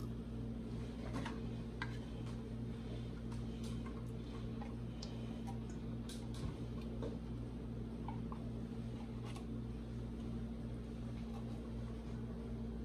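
Faint, scattered ticks and clicks of a silicone spatula scraping thick sweetened condensed milk out of a tin can into a steel mixing bowl, over a steady low hum.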